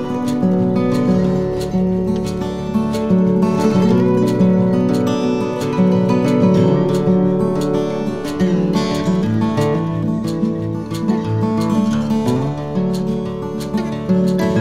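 Background music: acoustic guitar played with plucked and strummed notes.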